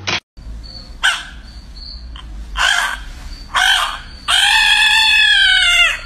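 Albino Pacman frog giving distress screams as it is poked: three short cries, then one long scream of about a second and a half near the end.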